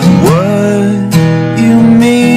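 Acoustic guitar strumming in a soft pop love-song cover.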